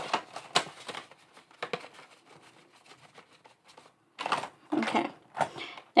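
Paper cash envelopes and binder pages being handled: short crisp rustles and light clicks, a quiet stretch in the middle, then a denser run of rustling near the end.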